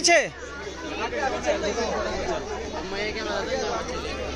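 Crowd chatter: many voices talking over one another, after a single loud man's word at the very start, with a steady low hum underneath.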